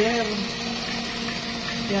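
A steady electric motor hum with a constant low tone and a faint hiss above it, heard under a voice that trails off in the first half second.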